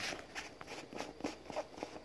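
Faint handling noise of a phone camera being jerked about, made of scattered light clicks and rustles.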